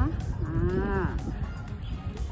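A woman's drawn-out "aah" lasting about a second, with background music running underneath.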